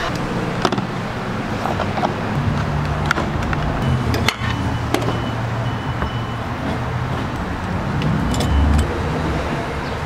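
Gas station fuel pump in use: the nozzle is handled with several sharp clicks and clunks, there are short electronic beeps from the dispenser, and a steady low hum runs underneath while fuel is pumped.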